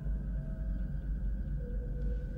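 Steady low rumble with a faint high hum: the background hum of a starship bridge on a film soundtrack. A faint held tone comes in near the end.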